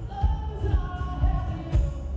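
Live pop-rock performance: a male voice singing a held melody line over strummed acoustic guitar and drums.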